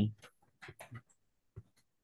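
A few faint, short scratchy noises about half a second in, then a single brief click.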